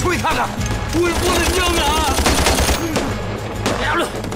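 A rapid burst of automatic gunfire in a film battle scene, starting about a second in, mixed with shouted voices and dramatic music.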